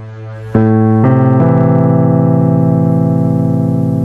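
Yamaha P-105 digital piano being played: a few fading notes, then a loud low chord struck about half a second in, with more notes added twice in the next second, held and slowly dying away.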